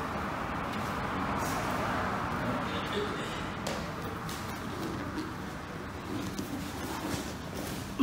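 Grappling on a mat: gi fabric rustling and bodies shifting, with a few soft scattered knocks.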